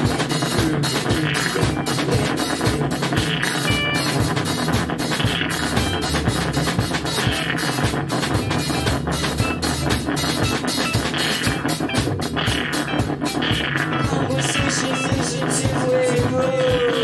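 Improvised live rock band music with a steady beat.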